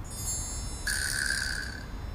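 A bright chime-like sound effect: a high, glittering shimmer, then about a second in a single clear ringing tone that holds for roughly a second.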